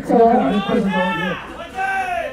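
A man's voice speaking.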